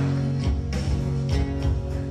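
A worship band playing without voices: acoustic guitars strummed over low notes held on keyboard and bass.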